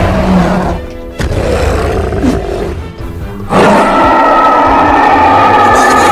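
Cartoon monster roar sound effect for a giant ape creature: a few shorter roars, then one long, loud roar starting about three and a half seconds in, over music.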